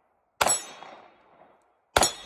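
Sharp metallic strikes about a second and a half apart, twice, each ringing out briefly before fading.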